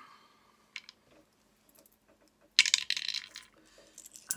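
Metal coins clinking: a couple of light taps about a second in, then a loud jangle of coins knocking together for about a second near the end as a handful is picked up.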